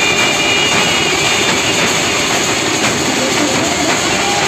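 Loud, dense drumming and cymbal crashing from a benjo band's bass drums, snare drums and hand cymbals. The hits run together into a continuous clattering wash.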